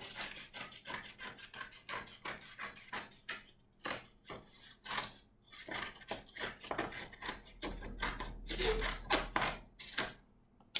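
Scissors snipping through two stacked sheets of paper, a quick run of short crunchy cuts several a second along a curved line, with the paper rustling as it is turned.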